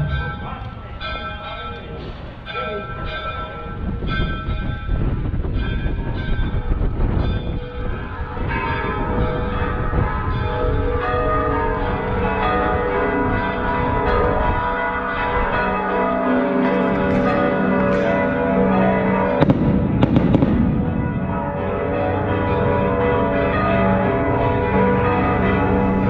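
Church bells pealing, struck over and over so that their tones overlap and ring on, over low street rumble, with a louder rush of noise about twenty seconds in.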